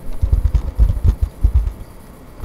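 A quick run of keystrokes on a computer keyboard, heard mostly as dull low thumps, thinning out shortly before the end.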